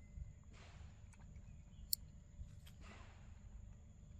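Quiet outdoor background with a steady low rumble, a couple of soft rustles, and one sharp click about two seconds in.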